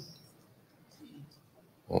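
Quiet room tone in a meeting hall with a faint murmur about a second in, then one short spoken "oh" near the end.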